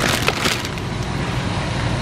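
Steady background noise of a large warehouse store, with crackling and rustling of plastic grocery packaging in a loaded shopping cart during the first half second.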